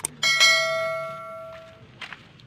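Subscribe-button animation sound effect: a mouse click, then a single bright bell ding that rings out and fades over about a second and a half.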